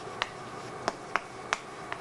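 Chalk writing on a chalkboard: about five sharp, irregularly spaced taps as the chalk strikes the board while letters are written by hand.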